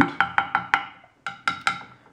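Glass pentane thermometer being knocked repeatedly against a soft wooden board, about five sharp taps a second with a short pause midway, each tap ringing briefly. The knocking is meant to drive the separated pentane column back together.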